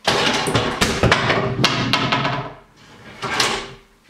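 A clatter of many quick, hard knocks for about two and a half seconds, then a second, shorter burst a little after three seconds in.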